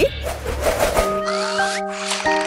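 A swish sound effect for a scene transition, then soft music with held notes and a few short rising slides starting about a second in.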